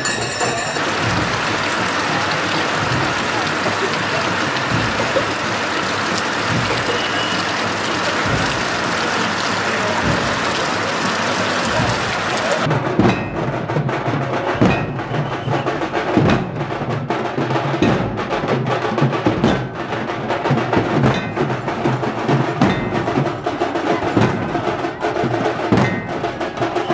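Loud festival procession drumming. For the first half it is a dense, continuous din. About halfway through it gives way to a troupe of large dhol drums beaten with many sharp, rapid strokes.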